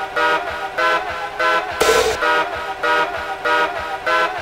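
Happy hardcore breakdown: bright, horn-like synth chord stabs repeating about three times a second, with no kick drum, and a sharp noise hit about two seconds in.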